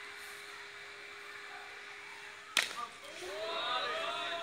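One sharp crack of a cricket bat striking the ball about two and a half seconds in, followed by several people shouting and calling out at once.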